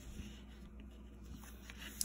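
Faint scratchy rubbing of a black Crayola wax crayon on paper as a tree trunk's line is thickened.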